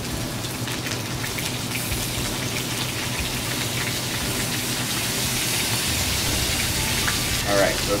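Steady sizzling of food frying in hot pans: salmon fillets searing skin-side down, with margarine and blanched baby carrots going into a second pan.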